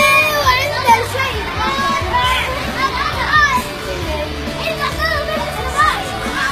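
Children's voices chattering and calling out over background music with steady low tones.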